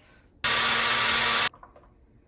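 Ninja personal blender motor running for about a second, loud and steady, starting and stopping abruptly.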